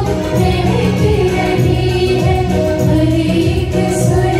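A group of singers, mostly women, singing a song together in chorus, with live band accompaniment.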